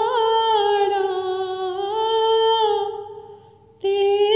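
A high-pitched voice, most likely a woman's, sings a slow melody without accompaniment, holding long wavering notes on a hum or vowel. About three seconds in it fades to a brief pause, then comes back just before the end.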